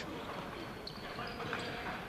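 Reverberant sports-hall sound of an indoor futsal game: a ball being kicked and bouncing on the wooden floor among players' footsteps, over a steady hall hiss.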